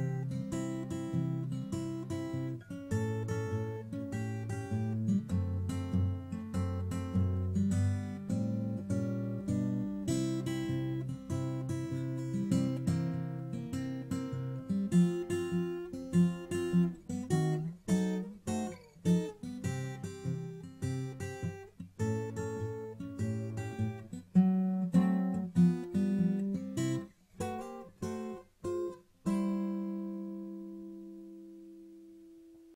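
Acoustic guitar played fingerstyle: a ragtime tune with a picked bass line under a plucked melody. It closes on a chord left ringing near the end.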